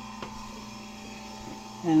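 Steady hum of a marine air-conditioning unit running in the engine room, with one faint click shortly after the start. A man's voice begins near the end.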